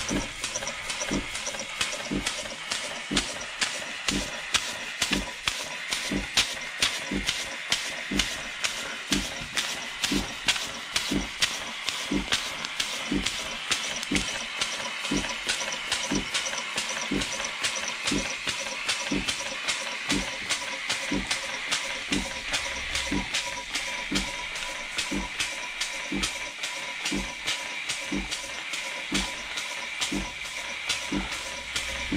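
A 1950s German model vertical steam engine running under live steam fed from an espresso machine's steam wand. Steady hiss of escaping steam, with a regular knock from the engine about twice a second.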